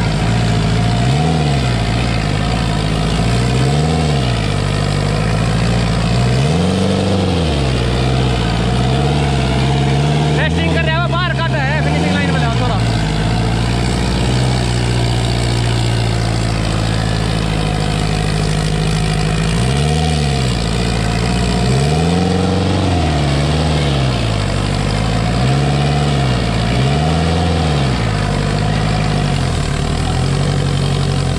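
Sonalika DI-750 III tractor's diesel engine working hard, pulling a harrow through sand. It is revved up and back down in quick repeated surges, about one a second, near the start and again from about 20 s in, and holds steadier in between.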